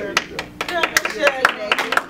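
People clapping their hands, several quick, uneven claps a second, with voices calling out over the clapping.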